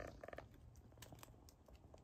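Near silence: faint outdoor room tone with a few soft clicks.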